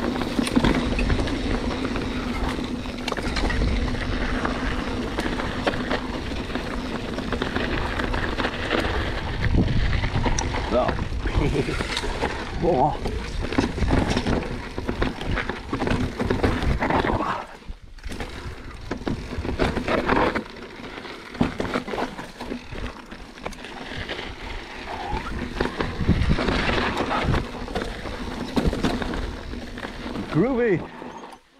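Full-suspension enduro mountain bike (Santa Cruz Bronson) riding down a dry, rocky dirt trail: continuous tyre and frame noise over the ground with many small knocks and rattles, mixed with wind on the camera. The noise dips briefly a little past halfway.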